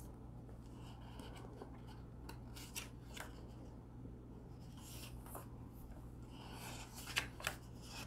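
Paper pages of a picture book being handled and turned: soft rustles and rubs, with two sharper paper crinkles near the end. A steady low hum runs underneath.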